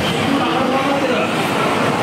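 A man's voice over a public-address loudspeaker, over a steady din of crowd noise in a large hall.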